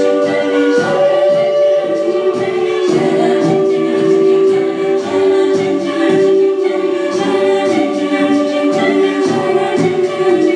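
Mixed-voice high school jazz choir singing a cappella into handheld microphones, several voices holding sustained chords that change every few seconds.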